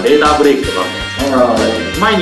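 A man talking in Japanese over background music, with steady low bass notes under the voice.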